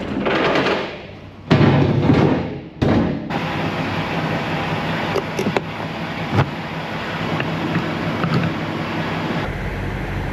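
Metal clatter and two loud knocks from an electric pallet jack working on the ribbed floor of an empty semi-trailer. This gives way to the steady low hum of an idling semi-truck, with a few sharp clicks as the trailer's electrical and air lines are plugged in.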